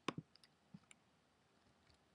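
Computer mouse double-clicked: two quick sharp clicks, followed by a few fainter clicks over the next second.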